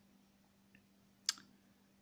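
A single short, sharp click a little after the middle, against near silence.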